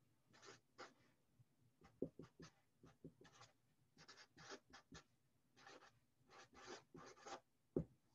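Sharpie felt-tip marker writing on paper: faint, short scratchy strokes in an uneven run as words are handwritten, with a couple of sharper taps of the tip on the page, the sharpest just before the end.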